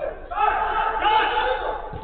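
A player's loud, drawn-out shout, lasting about a second and a half, with other players' voices in the background.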